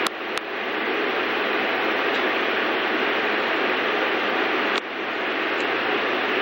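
Steady background hiss, with two sharp clicks right at the start and a brief dip in level near the end.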